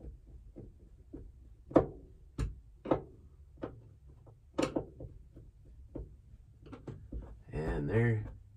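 Scattered clicks and taps of hands handling the rear-view mirror and a plastic sunglass holder against the van's headliner, the sharpest about two seconds in; a short voiced sound comes near the end.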